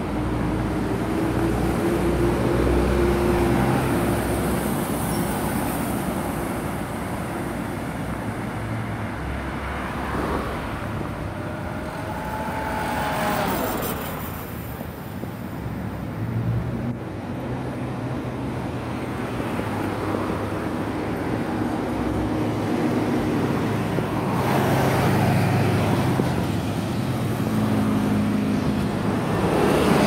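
Road traffic: steady engine and tyre noise with several vehicles passing, one with a falling engine note about halfway through. Near the end a bus passes close by.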